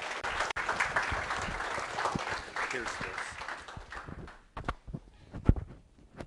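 Lecture audience applauding, the clapping dying away about four and a half seconds in, followed by a few scattered knocks.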